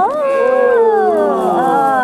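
Several sheep bleating at once, long overlapping calls that slide down in pitch.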